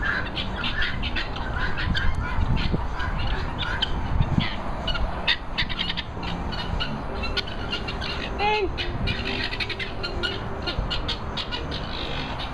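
Birds calling, a rapid scatter of short chirps with one longer squawking call about eight and a half seconds in, over a low rumble of wind or camera handling.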